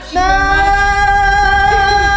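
A voice singing one long note, held at a steady pitch for about two and a half seconds before cutting off suddenly.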